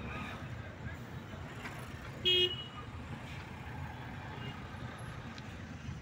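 Steady low rumble of a car driving in city traffic, heard from inside the cabin, with one short vehicle horn toot a little over two seconds in, the loudest sound.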